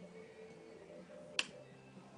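A double-pole double-throw toggle switch on a handlebar-mounted bicycle blinker box being flipped: one sharp click about halfway through.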